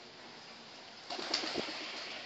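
A pigeon's wings flapping in a short burst about a second in, as the bird takes off.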